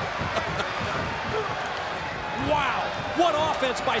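Arena crowd noise with dull thuds of wrestlers hitting the ring canvas. A man's voice comes in over it about two and a half seconds in.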